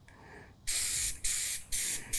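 Aerosol can of John Deere Blitz Black spray paint spraying: a hiss starts about two-thirds of a second in, breaks briefly, then a second burst follows.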